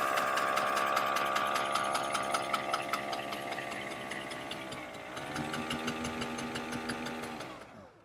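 Electric motor of a converted VéloSolex moped whining steadily as it drives the front wheel, with a regular light knocking from a rubbing brake. The pitch dips briefly a little past halfway, then the motor runs down and stops just before the end.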